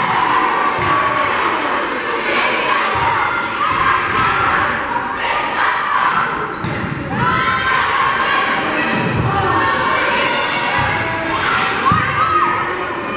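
Indoor volleyball rally: the ball is struck several times in sharp hits, over players calling out and spectators' voices and cheering in the gym.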